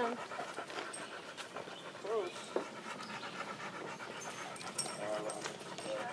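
A Vizsla panting steadily with its tongue out, winded from running.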